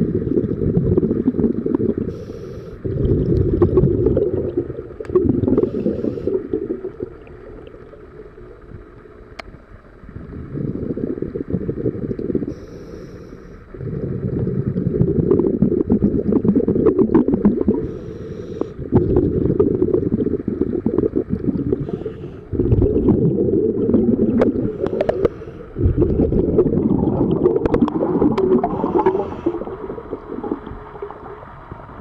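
A scuba diver's regulator exhaust bubbles heard underwater: a low, rushing gurgle in bursts of two to four seconds, one per breath, with quieter pauses between them.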